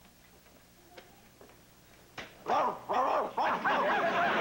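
A recording of a dog barking, played back on a small portable tape recorder: a quick run of barks starting a little after two seconds in. A single faint click comes about a second in.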